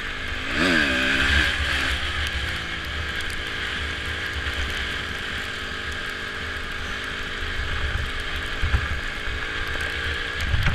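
Honda dirt bike engine heard from on board while riding, revving up and easing back down about a second in, then running steadily. Wind buffets the microphone throughout.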